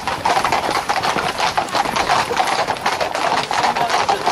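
Hooves of a tight pack of ridden Camargue horses striking an asphalt road: a dense, rapid, unbroken run of hoofbeats from many horses at once.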